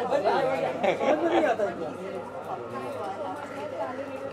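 Several people talking at once: overlapping conversation, loudest in the first second and a half, then quieter background talk.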